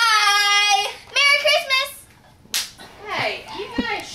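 Young girls' voices: a long, high, level-pitched call held for about a second, then a shorter wavering one. About two and a half seconds in comes a sharp breathy burst, and some brief talking follows near the end.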